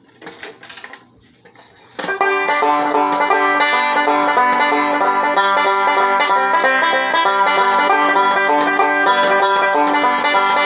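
A resonator banjo picked with fingerpicks comes in about two seconds in, after a few faint soft noises, and plays a steady, busy roll of plucked notes.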